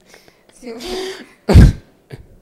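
Close-miked human voice in a small studio: a quiet voiced sound near the middle, then one loud, short vocal burst into a microphone about one and a half seconds in.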